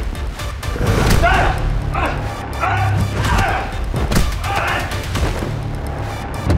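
Dramatic background music with a low pulsing bass under a fight: a couple of sharp thuds of blows and men's strained grunts and cries.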